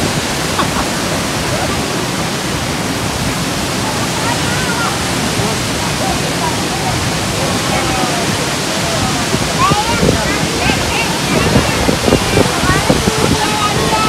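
Dunhinda Falls in heavy, muddy flow, giving a loud, steady roar of falling water. People's voices can be heard faintly over it, louder in the last few seconds.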